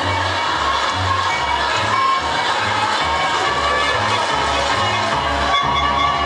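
Background music with a bass line pulsing about twice a second under sustained higher notes.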